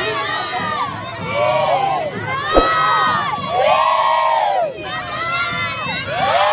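A large group of children shouting together in repeated chanted shouts, each about a second long with short gaps between. A single sharp knock sounds about two and a half seconds in.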